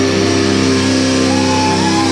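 Live rock band holding a ringing distorted chord with no drum strokes, and a higher note sliding up and back down in the second half.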